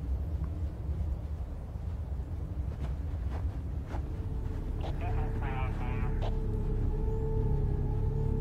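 A steady low outdoor rumble with scattered faint clicks. About halfway, a sustained low drone from the film score comes in and holds, and a brief voice sounds about five seconds in.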